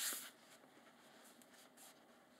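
Folded sheet of paper sliding down onto a stack of folded paper with a brief swish, followed by faint soft rubbing of hands over the paper about a second and a half in.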